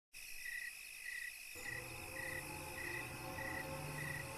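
Crickets chirping in short, evenly spaced pulses, about one every half second, over a faint high hiss. A low steady tone comes in about a second and a half in.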